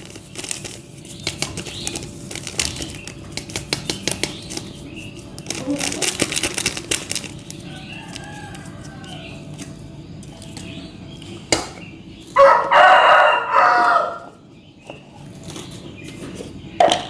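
Crinkling and light clicking of a plastic sachet as Nutrijell jelly powder is shaken into an aluminium saucepan. About twelve seconds in, a rooster crows loudly for about a second and a half.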